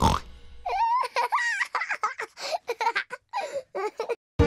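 Peppa Pig's young cartoon voice laughing, a string of short giggles that starts about a second in.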